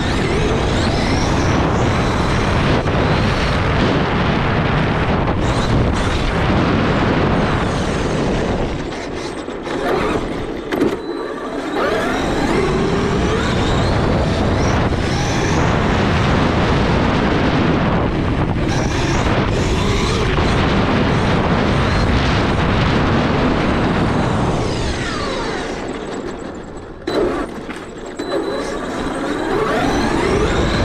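Onboard sound of a Traxxas E-Revo 2 electric RC monster truck driving fast over cobblestones: a loud, rough rumble with the motor's whine rising and falling as it speeds up and slows. It eases off twice, about nine seconds in and again near the end.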